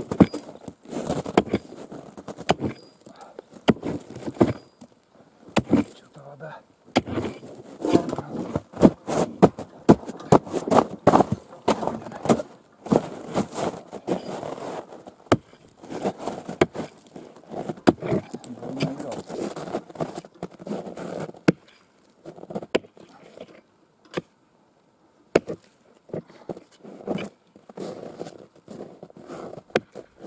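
A hatchet chopping into river ice: many irregular sharp blows with crunching and scraping of broken ice, opening a hole to reach the water. The blows grow sparser in the last third.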